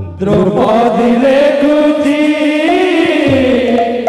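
Odia devotional kirtan singing: male voices chanting a long, drawn-out line together, with a low barrel-drum stroke at the start and another near the end.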